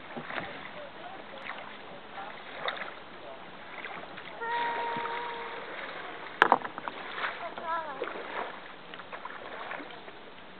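Kayak paddle blades dipping and splashing through lake water, stroke after stroke, with water dripping off the blades. A sharp knock about six and a half seconds in is the loudest sound; a held tone lasting about a second comes just before it.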